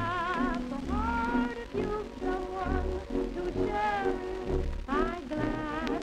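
A 1920s popular song played from a Victor 78 rpm shellac record on a turntable: a melody with wavering vibrato over a recurring bass note, with the record's surface noise running underneath.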